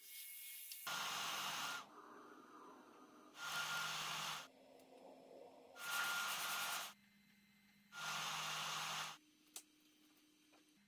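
LaserPecker 4's infrared laser module etching a metal name tag: four bursts of hissing, each about a second long and about two seconds apart, with a faint low hum between them.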